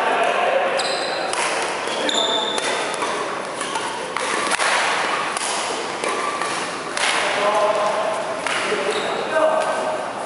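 Badminton rally on a wooden gym floor: sharp racket strikes on the shuttlecock and brief high squeaks of sneakers on the court, under players' voices.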